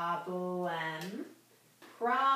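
A woman's voice spelling out letters slowly, two long held syllables at a steady pitch, then a short pause.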